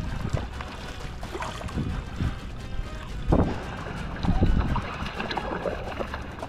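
Water sloshing and splashing around a kayak at sea, with wind rumbling on the microphone and a couple of louder low swells a little past the middle, under background music.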